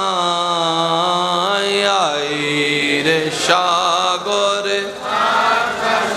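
A man's amplified solo voice chanting a devotional Islamic line in long, held melodic notes that slide slowly downward, with a short break partway through.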